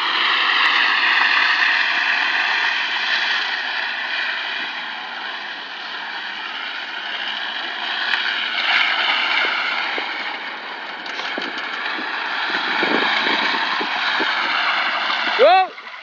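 Front tyres of an Opel Corsa hatchback squealing continuously on asphalt as the car drifts round in circles, the high-pitched screech wavering slightly in pitch and loudness.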